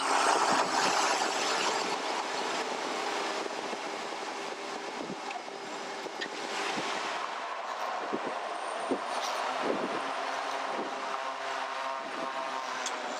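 Cockpit noise of the M28's twin Pratt & Whitney PT6A turboprops as the aircraft rolls down the runway: a steady propeller hum under a rushing noise that eases over the first few seconds. Occasional short knocks are heard in the second half.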